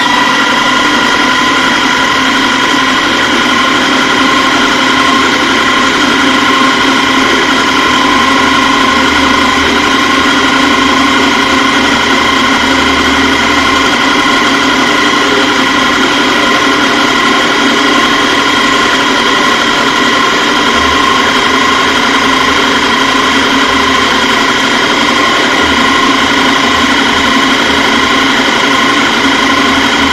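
Drill press running at constant speed with a steady whine while a 7/64-inch bit drills through a metal bracket.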